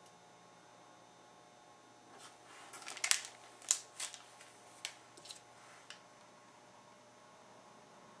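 A short run of crinkles and sharp clicks from a plastic icing bag being handled, starting about two seconds in, loudest around three to four seconds, and trailing off in a few single ticks about six seconds in.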